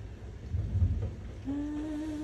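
A low rumble of handling noise about half a second in, then a woman humming one steady note for most of a second near the end.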